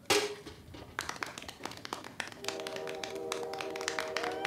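A sharp metallic clank with a brief ring just after the start, as a slingshot stone strikes a tin can, followed by a scatter of light taps and clicks. Sustained music tones come in about halfway.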